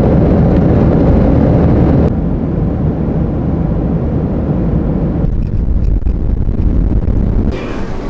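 Steady, loud low noise of engines and airflow inside an airliner cabin in flight, stepping down slightly twice. Near the end it gives way to a lighter, busier background.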